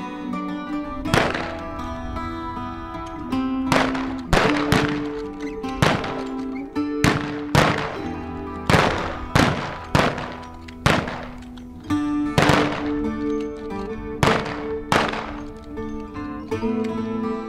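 Rifles firing in a ragged volley, about sixteen sharp cracks at irregular intervals, over background music with long held notes.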